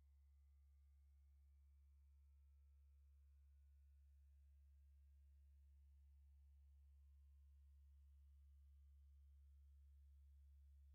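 Near silence: a faint, steady low hum that slowly grows a little louder.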